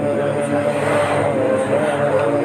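Many men's voices chanting dhikr together in unison, a continuous drone of long held notes that bend slightly in pitch.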